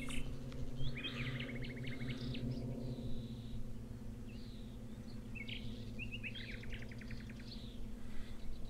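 A small songbird singing two short phrases of chirps and rapid trills, about a second in and again around six seconds, over a steady low hum.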